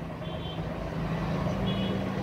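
A steady low mechanical hum with a held low tone, growing slightly louder, and two faint, brief high-pitched tones, one near the start and one near the end.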